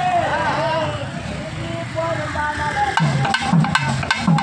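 Crowd voices talking and calling out, then procession drums struck with sticks come in about three seconds in, in a steady beat of about four strokes a second.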